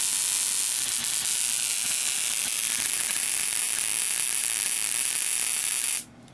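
Relay-buzzer ignition coil driver running: the relay chattering as it pulses an automotive ignition coil, which fires a continuous rapid stream of high-voltage sparks across a brass spark gap. It makes a steady, high-pitched sizzling crackle that cuts off suddenly at the end. The relay contacts are arcing hard; that much wear, the builder reckons, will burn them out in an hour or two.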